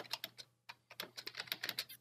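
Computer keyboard being typed on: a quick, uneven run of faint key clicks.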